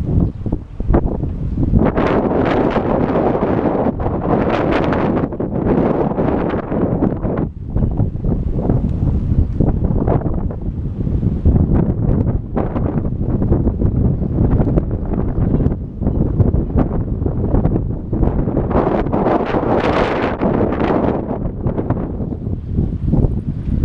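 Wind rushing over the microphone of a camera riding on a moving bicycle: a loud, low rumble that swells in gusts.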